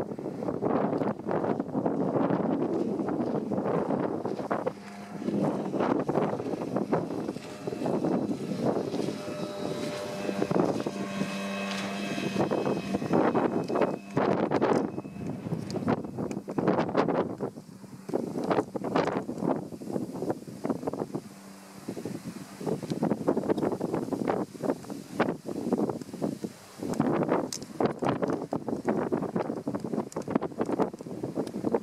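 Gusty wind buffeting the microphone, over the distant, steady hum of an outboard motor pushing a small inflatable boat at speed; the engine's whine comes through most clearly about ten to fourteen seconds in.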